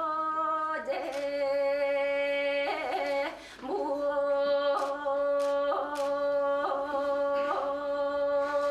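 A woman singing solo and unaccompanied in the Yakut Olonkho theatre style: long held notes that step from pitch to pitch, with short breaks about a second in and around three and a half seconds in.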